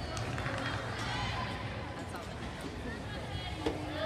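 Background chatter of many distant voices echoing in a large hall, a steady crowd hubbub.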